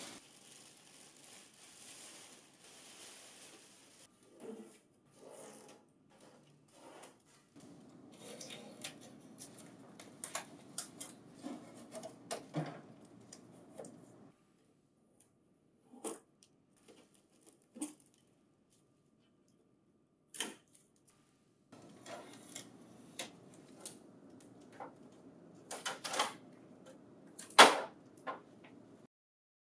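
Clear plastic wrapping rustling and tape being peeled off a printer staple finisher. Scattered clicks and knocks come as the unit and its plastic and metal parts are handled, with a few seconds of near quiet in the middle and a louder knock near the end.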